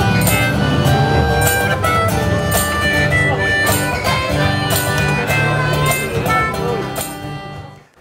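Street musician's acoustic guitar music with a steady beat, played live on the street, fading out near the end.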